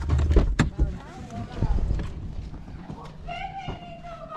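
A few sharp knocks and clicks in the first second, then people's voices outside.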